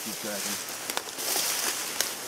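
Tall dry weeds rustling as a person walks and pushes through them, with a brief snap about a second in and the rustling heaviest in the second half.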